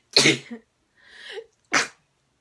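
A young woman sneezing twice, about a second and a half apart, with a quick breath in between.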